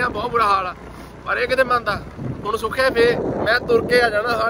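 A man talking in short phrases while riding on a motorcycle, with wind noise on the microphone and a steady low rumble from the ride underneath.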